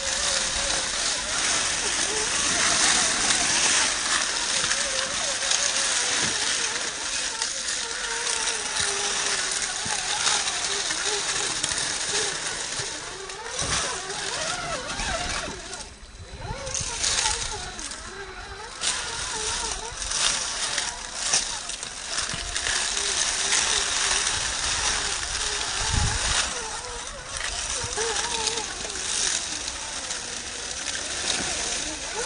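Electric whine of a 1/10-scale RC rock crawler's brushed 540 motor and geartrain, rising and falling with the throttle, over its tyres crunching and rustling through dry fallen leaves and scrabbling on rock. The whine drops away briefly about halfway through.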